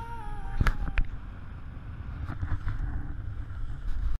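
Wind rumbling on the microphone and water rushing past a sailing yacht's hull under sail, with two sharp knocks about half a second and a second in. A held music note fades out at the start.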